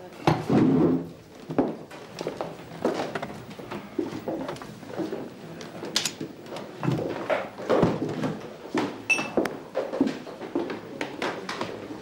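Café room sound: indistinct background chatter with scattered knocks and clicks of movement and tableware.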